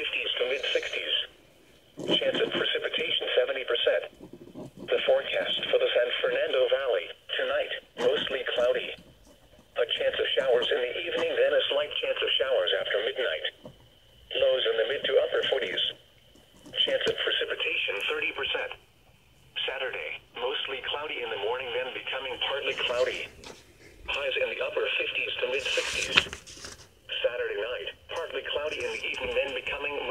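Weather radio broadcast: a voice reading a weather forecast in short phrases with brief pauses, sounding thin and narrow as through a small radio speaker.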